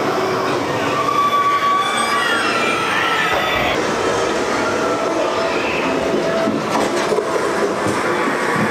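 Haunted-house soundtrack over loudspeakers: a loud, steady wash of noise with high screeching tones that glide up and down.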